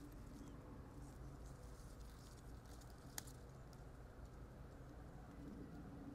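Near silence: a faint steady low background, with a single faint click about three seconds in.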